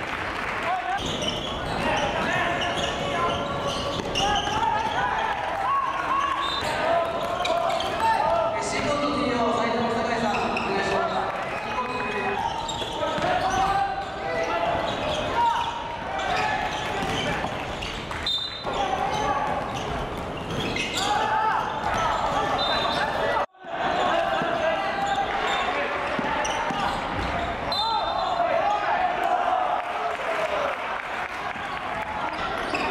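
Live basketball game sound in a gymnasium hall: a ball bouncing on the hardwood floor and players' and bench voices calling out, with a brief dropout about three-quarters of the way through where the footage cuts.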